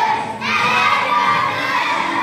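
A group of young children's voices loudly in unison, reciting or singing together as a chorus, with a short breath-like break near the start.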